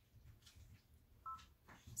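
A single short electronic beep from a Brother embroidery machine's touchscreen as its size button is pressed, about a second in, against near silence.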